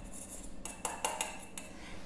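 Stainless steel mixing bowl clinking and knocking lightly against the steel bowl it rests in, about half a dozen short clinks.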